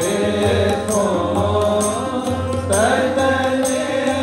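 Sikh kirtan: a voice singing a Gurbani hymn over two harmoniums holding steady chords, with tabla strokes keeping a regular beat.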